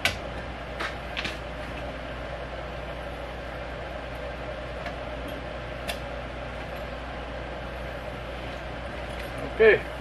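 A few light clicks and taps of small hardware as the row marker arm is pinned and clipped onto a push garden seeder, the sharpest click right at the start, over a steady background hum.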